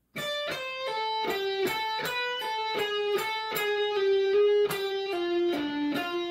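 Electric guitar playing a single-note lead line, about sixteen picked notes at a bit under three a second, each note ringing until the next.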